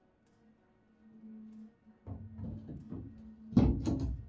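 Knocks and rattles of a Lewmar deck hatch being handled in its welded steel opening, building from about halfway through to two sharp knocks close together near the end, over faint background music.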